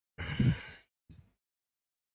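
A man's short breathy exhale, like a sigh, lasting about half a second, followed by a faint brief noise.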